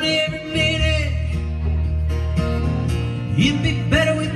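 Live country-style band music: guitars over a steady bass. A high melody note slides up and is held, then slides up again near the end.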